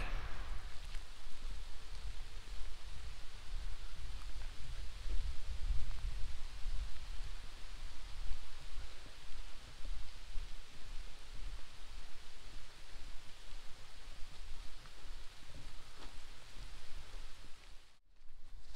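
Steady hiss of light, continuous rain, with a low, uneven wind rumble on the microphone.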